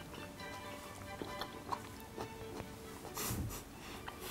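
Quiet background music with steady tones, a few faint short clicks, and a short noisy sound near the end.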